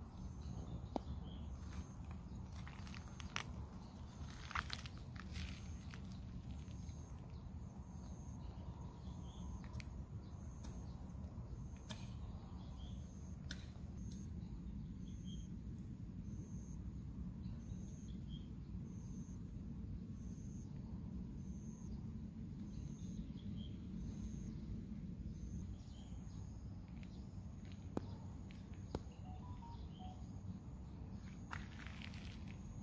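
Outdoor garden ambience: a steady low rumble, a faint high chirp repeating about once a second, a few brief bird-like chirps, and scattered sharp clicks.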